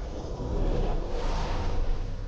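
Sound-effect rush of noise over a deep rumble, swelling about half a second in, laid under a glowing magical aura.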